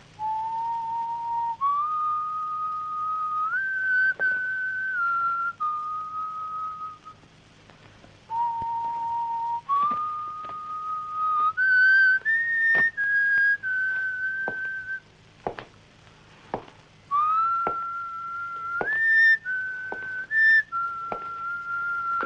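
A person whistling a slow tune in three phrases of long held notes that step up and down, with short pauses between the phrases.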